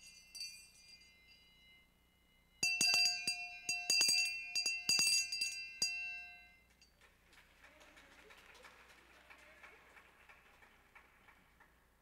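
Hand bell rung in a quick series of sharp strikes for about four seconds, with a bright metallic ring that lingers and then dies away. Faint ringing comes before it, and faint room noise after it.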